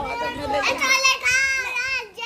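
A small child's high-pitched voice making playful, wordless calls with drawn-out, wavering pitch.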